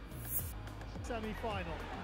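A short, high hissing swoosh just after the start, then faint music and a voice over a steady low hum.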